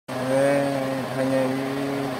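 A man's voice drawing out two long, steady syllables, each held for about a second, with a short break between them.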